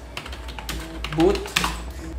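Computer keyboard being typed on: a quick run of keystrokes in the first second, then a few more.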